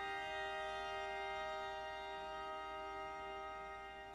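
Piano quintet (piano with two violins, viola and cello) holding its final chord, a steady sustained chord that slowly fades away.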